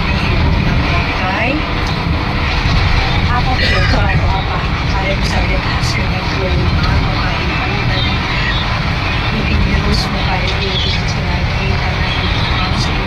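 Steady low rumble of road and engine noise inside a moving vehicle's cabin, with a woman's voice talking over it.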